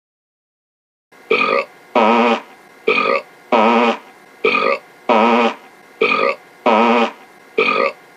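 A cartoon character burping and farting in a steady alternation, starting about a second in. A short sound is followed by a longer one that wavers in pitch, and the pair repeats about every second and a half.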